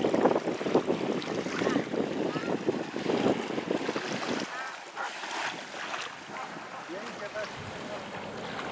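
Wind buffeting the microphone over small sea waves lapping the shore. The buffeting drops off about halfway through, leaving the softer wash of the water.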